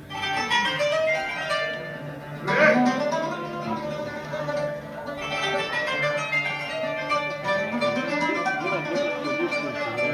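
Live music on plucked string instruments, a guitar among them, with a brief loud swell about two and a half seconds in.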